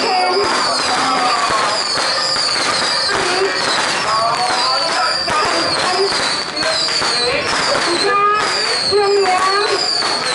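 Crowd chatter with firecrackers crackling throughout, and a high falling whistle-like tone repeating over and over.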